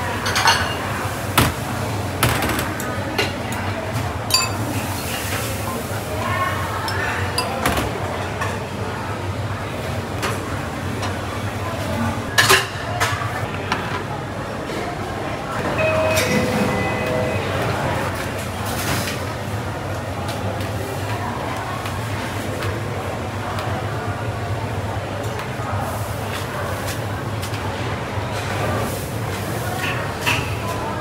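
Kitchen clatter at a noodle stall: bowls and utensils clinking and knocking now and then, the sharpest knocks about 12 seconds in, over a steady low hum and background voices.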